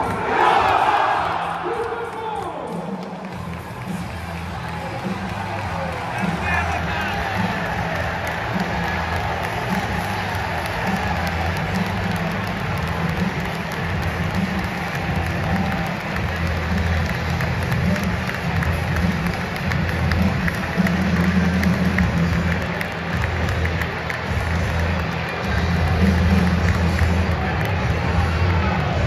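Big football stadium crowd: a dense, steady hubbub of thousands of fans, louder right at the start, with music from the stadium's loudspeakers underneath.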